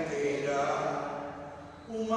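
A single voice chanting a slow liturgical melody in long held notes, the phrase fading away near the end before the next one begins.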